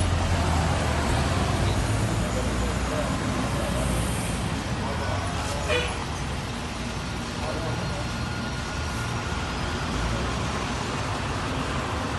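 Steady road-traffic and vehicle-engine noise with a low rumble, with a brief click about six seconds in.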